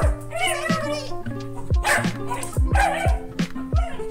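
Miniature schnauzer vocalizing excitedly in two short bursts, about half a second in and again around three seconds in, as it jumps up at a person in greeting. Background music with a heavy, steady beat plays throughout.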